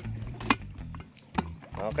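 Stainless-steel electric kettle being handled: two sharp clicks about a second apart as its lid is shut and the kettle is set on its base, over a steady low hum.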